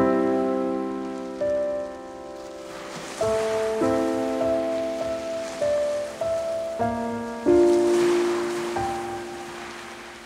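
Slow instrumental piano music: chords struck every second or so, each ringing and fading before the next, over a soft rain-like hiss that swells briefly midway and again near the end.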